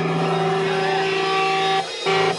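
Live hardcore band holding a single distorted electric guitar and bass chord, which cuts off sharply near the end before chopped, stop-start riffing starts.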